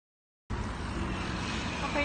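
Silence for about half a second, then a steady hum and hiss of city street traffic picked up on a phone microphone.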